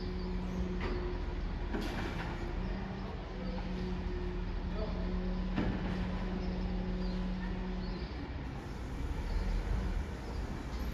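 City street ambience: a steady low engine-like drone over a traffic rumble, breaking off briefly a few times and stopping near the end, with a few sharp knocks and faint bird chirps.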